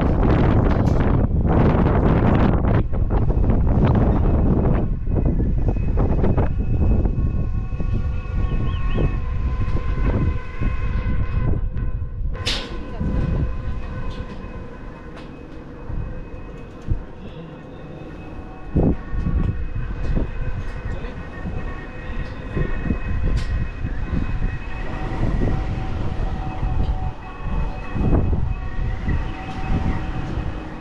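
Wind buffeting the microphone, heaviest in the first six or seven seconds and then easing, with a steady hum of several held tones running underneath from about six seconds in.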